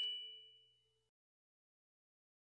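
The last notes of a bell-like chime ringing out and fading away in about the first half second, then silence.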